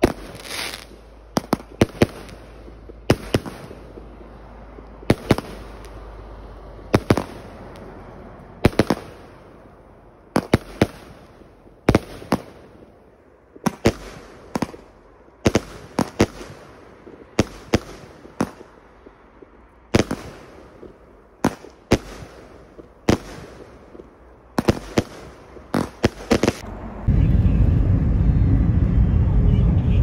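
Aerial fireworks going off, with sharp bangs roughly once a second and some in quick doubles as shells launch and burst. About three seconds before the end it cuts to a steady, loud, low rumble of a moving vehicle.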